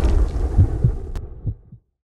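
The fading tail of a deep boom sound effect, with low throbbing pulses about three or four a second, dying away to silence near the end.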